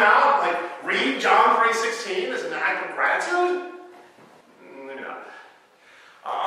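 A man's voice preaching: speech only, trailing off into a quieter pause near the end.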